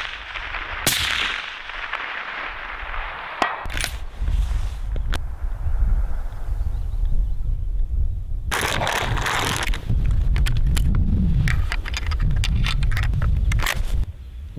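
Rifle shots: a sharp crack about a second in that echoes away, then further cracks a few seconds later. From about four seconds in, a low rumble of wind on the microphone runs under a burst of noise and a run of small clicks.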